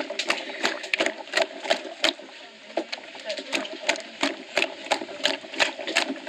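Hands squeezing and kneading fibrous palm-nut pulp in a plastic basin of water, a rhythmic wet squelching and sloshing at about three strokes a second.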